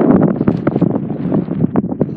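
Wind buffeting the microphone: loud, uneven wind noise with scattered crackles.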